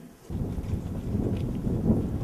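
Wind buffeting the microphone outdoors: a low, gusty rush that starts abruptly about a third of a second in.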